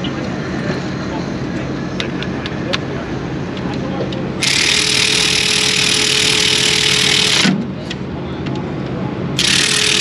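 A hand-held power tool is used on the engine's rocker arms. It runs in two bursts, a hissing whine for about three seconds from midway and again near the end, after a few light metal clicks. A steady drone of pit noise lies under it.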